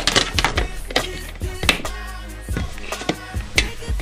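Background music with a steady bass line, over which come several sharp clicks and knocks of a plastic storage tub and its lid being handled.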